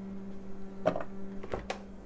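A few light clicks and knocks from kitchen items being handled on a countertop, over a steady low hum.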